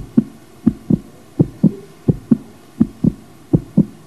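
Heartbeat sound effect: low double thumps (lub-dub) repeating evenly, roughly one and a half a second, building suspense during a countdown to a decision.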